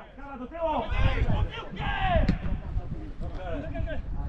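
Men's voices calling and shouting across a football pitch, the words unclear. There is one sharp knock a little after two seconds in.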